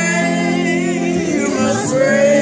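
A man singing a gospel song in long held notes, accompanied by chords on a hollow-body electric guitar.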